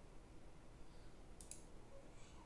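Near silence with a single faint click about one and a half seconds in, a computer mouse click.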